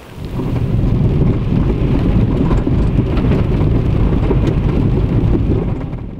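Loud rumble of a car driving over a rough dirt track, heard from inside the cabin, with scattered small knocks. It starts suddenly just after the beginning and fades out at the end.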